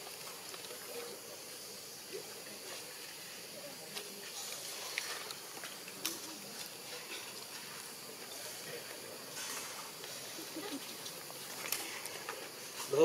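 Steady outdoor ambience: a faint, even high hiss with a few soft clicks and faint distant voices now and then.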